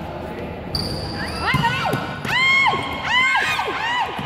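Basketball game on an indoor court: sneakers squeak sharply on the floor several times from about a second in, the loudest in the middle, while a basketball is dribbled, over background voices.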